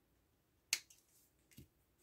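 Small spring-loaded thread snips closing on the thread ends at the centre of a ribbon bow: one sharp snip a little under a second in, then a softer knock about a second later.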